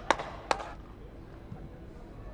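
Two sharp knocks about half a second apart, followed by faint steady outdoor ambience.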